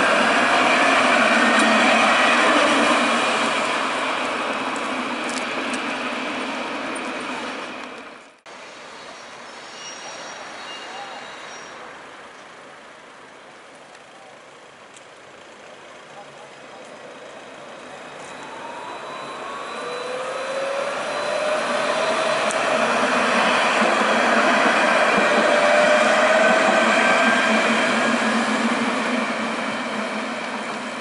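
Alstom Citadis trams passing on street track: one runs by close at the start, then after a cut a second approaches and passes, its traction-motor whine rising in pitch and growing loudest about two-thirds of the way through.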